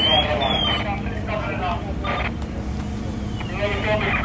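Indistinct voices over the steady low rumble of idling fire apparatus engines, with short high sweeping tones near the start.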